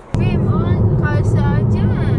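Steady low rumble of a car driving, engine and road noise heard from inside the cabin. It starts abruptly just after the beginning, with a high-pitched voice over it.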